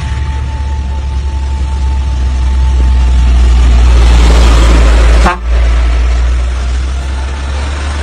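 Motor vehicle on a wet road: a loud, steady low rumble of engine and tyres that swells toward the middle and breaks off briefly about five seconds in.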